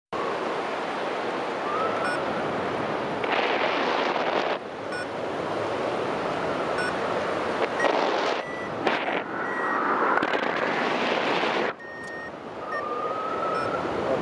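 Wind rushing over the microphone of a hang glider in flight, a steady rush that surges louder several times and drops briefly near the end, with a few faint short steady tones over it.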